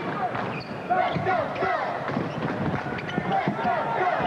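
A basketball being dribbled on a hardwood court, heard as repeated short bounces among voices.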